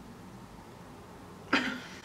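A single short cough about one and a half seconds in, after low room tone.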